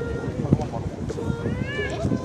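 People talking in the background with wind rumbling on the microphone. Near the end there is a brief high-pitched sound that rises and then falls.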